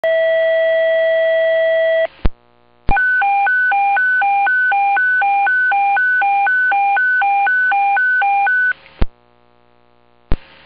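Fire department dispatch alert tones received over a radio scanner, paging a fire station crew to a call. A steady tone lasts about two seconds, then a radio click and a short gap. Then comes a warbling tone that switches between a high and a low note a few times a second for nearly six seconds, ending in a click.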